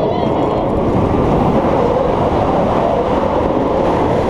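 Steel roller coaster train running at speed along its track, heard from on board: a steady, loud rumbling roar of wheels on rails mixed with rushing air.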